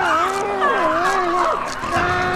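A woman screaming: one long scream that wavers up and down in pitch and breaks off about one and a half seconds in.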